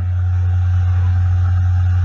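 A loud, steady low hum, one deep constant drone with faint hiss above it.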